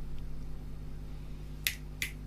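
A pause in the talk: a steady low electrical hum on the studio microphone feed, then a single sharp click near the end.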